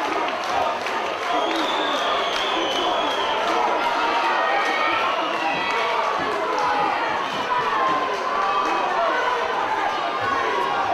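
Fight crowd cheering and shouting, many voices overlapping in a steady din.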